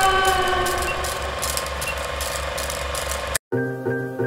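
Old-film countdown sound effect: a rapid, even mechanical clatter like a film projector running, under a held chord that slowly sags in pitch. It cuts off suddenly near the end and piano music begins.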